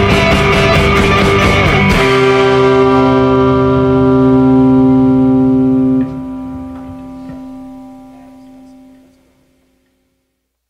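Rock band with drums and distorted electric guitars, stopping on a final chord about two seconds in. The held guitar chord rings on, drops back about six seconds in and dies away to silence near the end: the close of a song.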